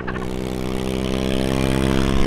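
Electric dirt bike held at its limited top speed, with a scooter riding close alongside: a steady drone of many evenly spaced tones at constant pitch over wind rush, growing slowly louder.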